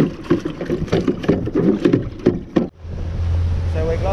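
Indistinct, muffled talking with a few sharp knocks, then an abrupt cut about two-thirds of the way in to a steady low rumble.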